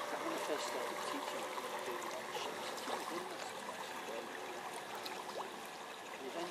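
Steady watery hiss, with faint voices talking in the background.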